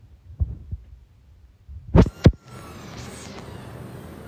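Muffled low thumps from a phone being handled against its microphone, with two sharp knocks about two seconds in, followed by a steady background hum.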